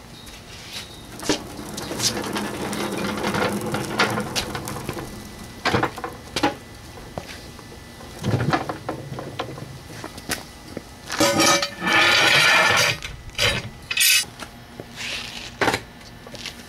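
Caster-wheeled dolly rolled and handled on concrete, with clatters and knocks of metal foundry gear being moved. There is a longer stretch of rolling noise early on and a louder scraping roll about eleven seconds in, followed by a few sharp knocks.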